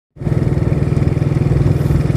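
Rusi DL150 motorcycle's single-cylinder engine running steadily with a fast, even pulse, heard from the rider's seat.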